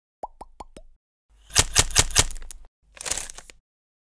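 Logo-intro sound effects: four quick plops, each sliding up in pitch, in the first second, then a rapid run of sharp clicks for about a second, and a short whoosh near the end.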